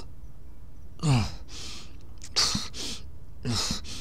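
A man's pained, heavy breathing: three gasping breaths about a second and a quarter apart, each a short falling voiced catch followed by a breathy exhale.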